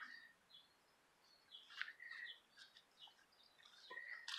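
Near silence with faint bird chirps: a few short, high calls about one and a half to three seconds in.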